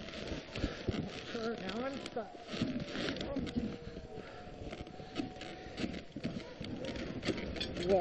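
Faint scuffling and clicking from a sled-dog team and its gear in snow while the team is held at a stop, with a few brief, faint pitched cries about two to four seconds in.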